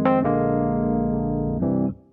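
Toontrack EZKeys playing back a neo-soul MIDI song as sustained keyboard chords in a slow 6/8. A chord is struck at the start, another a moment later and one more near the end, and the sound stops suddenly just before the end.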